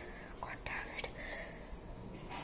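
Faint breathing and soft handling of a tissue being lifted to the nose, with a few light clicks about half a second and a second in.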